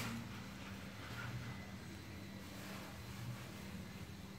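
Aerosol spray can hissing onto a scooter's front brake caliper, cutting off right at the start, followed by a faint steady low hum.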